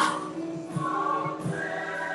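A choir singing, with held notes.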